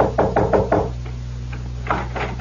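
Knocking on a door: a quick run of about five knocks in the first second, then more knocks near the end, over a low steady hum.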